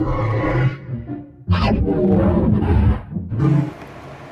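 Cartoon soundtrack: music and deep, voice-like sound effects in three loud bursts, dropping away just before the end.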